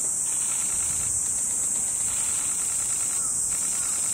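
Steady, high-pitched drone of insects, unbroken throughout.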